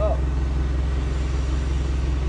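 Steady low hum of a running motor, even and unchanging, with a fine regular pulse to it.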